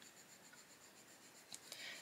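Faint scratching of a Faber-Castell Polychromos coloured pencil on paper as colour is layered over a leaf, a little louder near the end.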